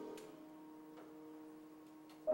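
Grand piano notes dying away quietly in a pause, one low-middle tone held under the pedal, with about three faint clicks.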